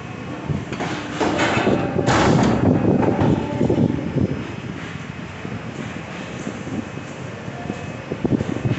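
Industrial paper guillotine cutter running: a mechanical rumble that swells about a second in, with a sharp hiss about two seconds in, then settles to a steadier, lower hum.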